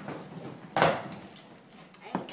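A single sudden clatter, like something knocking on a hardwood floor, about three-quarters of a second in, fading out over about half a second; otherwise only faint room sound.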